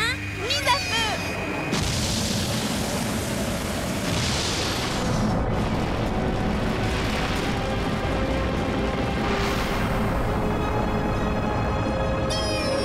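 Cartoon rocket launch sound effect: a dense, steady rushing noise of rocket thrust that starts just under two seconds in and carries on, with music playing over it.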